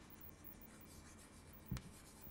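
Chalk writing on a chalkboard: faint scratching strokes as a word is written, with one short soft sound near the end.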